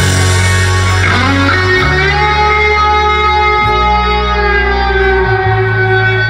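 Live rock band with electric guitars and bass guitar playing held, ringing chords. A guitar note slides about a second in, and the bass steps to a new note every couple of seconds.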